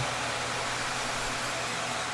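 Steady fan-type rushing noise with a faint low hum underneath, unchanging throughout.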